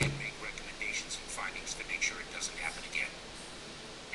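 Thin, tinny speech from a news broadcast played through a screen's small speakers, too indistinct for words to be made out. A single dull thump right at the start.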